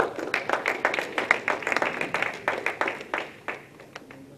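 Audience clapping: a scattered run of hand claps that thins out and stops near the end.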